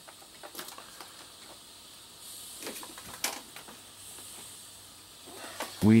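Faint scattered clicks and light handling noise, with a soft hiss for about two seconds in the middle.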